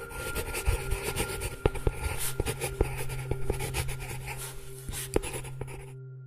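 Pen sketching on paper: quick, irregular scratching strokes, over a low steady hum.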